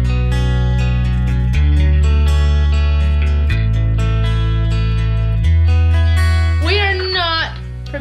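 Intro music: an acoustic guitar strumming over a strong bass, changing chord about every two seconds. Near the end the music drops and a voice comes in.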